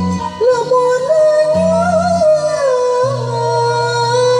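A woman singing Sundanese tembang (Cianjuran-style kacapi kawih) in a long melismatic line with small wavering turns on held notes, rising about a second in and falling back near the end, over kacapi zithers and a violin.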